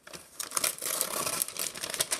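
Brown paper bag being ripped open by hand, a run of crackling tears and crinkles of the stiff kraft paper.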